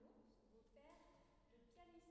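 Faint speech: a woman talking quietly.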